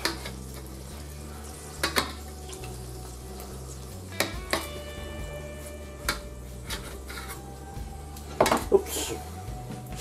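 Kitchen knife and metal tongs clinking and scraping against a metal platter while sausages are cut in half: a few scattered sharp clinks, one ringing on briefly near the middle.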